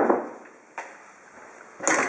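Handling noise from the camera: a sharp knock right at the start, a small click under a second in, then rubbing and rustling near the end as the camera is moved close against clothing.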